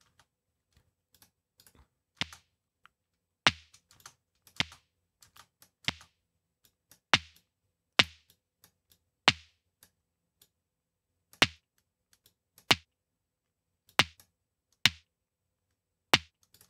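A series of short, sharp clicks, about one every second or so and irregularly spaced, each with a brief low thud underneath.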